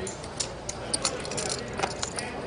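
Poker chips clicking, several short, sharp clicks a second at an uneven pace, over low steady table-room noise.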